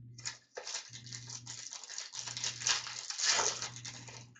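Trading cards rustling and sliding against each other as hands handle and sort them. It is a dense, crackly rustle that swells, loudest about three seconds in.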